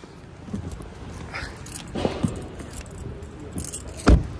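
Keys jingling, with a few light clicks and knocks, while someone gets out of a parked car.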